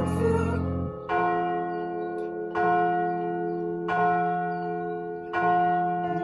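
Church bells struck four times, about a second and a half apart, each stroke left to ring on and decay into the next. The band's low notes stop about a second in, so the bells sound on their own.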